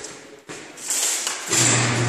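LiftMaster garage door opener switching on about a second and a half in and running with a steady low hum.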